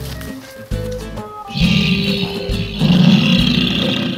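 A man in a bear costume roaring, one long loud roar starting about a second and a half in and swelling near the end, over background music.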